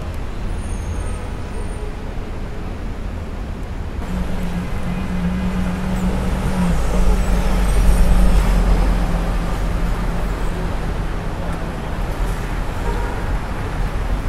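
City street traffic noise with a city bus's engine drone passing close by; the low drone builds to its loudest a little past halfway, then eases off. The first few seconds hold a quieter, steady city hum.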